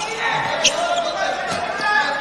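Indoor futsal match on a hard court: ball touches and players' shoes on the floor, with a short high squeak about two-thirds of a second in, over the steady noise of the crowd in the hall.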